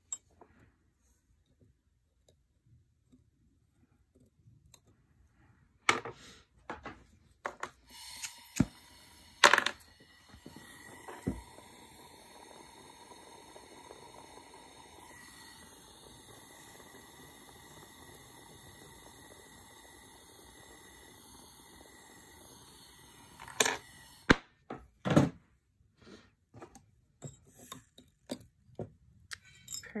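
A jeweller's torch burning with a steady low hiss for about fifteen seconds as a chain link is soldered. Sharp clicks and taps of tweezers and tools on the soldering board come before and after it.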